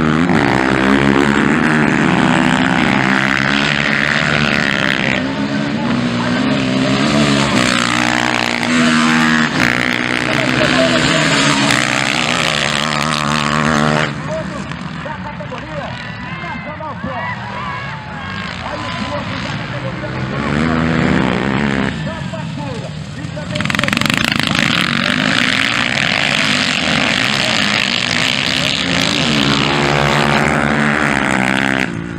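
Motocross dirt bike engines running hard as several bikes race past, their pitch rising and falling as they rev; the engines drop away to a quieter stretch about halfway through before coming back loud.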